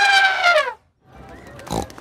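Cartoon characters laughing together in one held laugh that falls in pitch and ends under a second in, followed by a quieter stretch.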